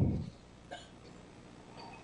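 The end of a man's spoken word fading out, then quiet room tone with one faint click under a second in.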